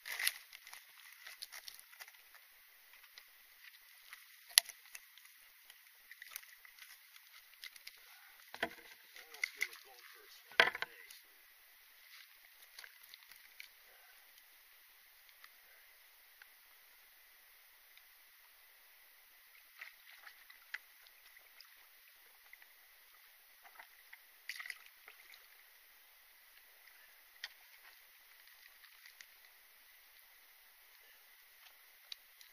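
Faint scattered knocks, scrapes and rustles of a person clambering out along a fallen tree trunk over a river among dry branches, with two sharper knocks about four and ten seconds in.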